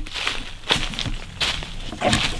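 Footsteps crunching through dry, fallen leaf litter, about three steps a second.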